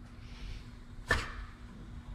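A single sharp click about a second in as a lithium-greased polyurethane bushing and its sleeve push into place in a tubular control arm by hand, over a faint steady hum.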